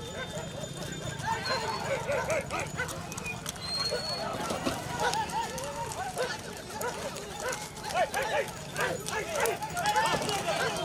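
A crowd of men calling and shouting over one another, with the hooves of cart horses clopping on the road.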